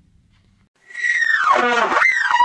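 Trumpet entering about a second in on a high held note, then falling in a fast slide down to a low note.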